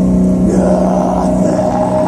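Live black metal band, loud distorted electric guitars holding long droning notes; a higher sustained note comes in about half a second in.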